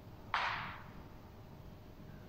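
A single sharp, breathy exhale through the mouth, starting suddenly about a third of a second in and fading away within half a second, as a Pilates exerciser folds her body forward.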